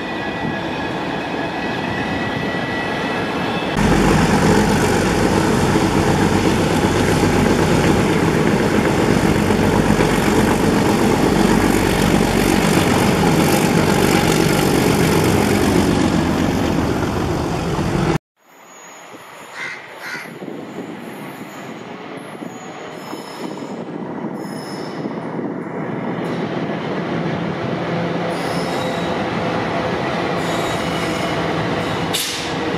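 ALCo diesel locomotives and their trains running, heard in three joined clips: a steady engine sound, then from about four seconds a louder stretch of train running noise that cuts off abruptly around the middle, then after a brief drop a quieter locomotive sound that builds again toward the end.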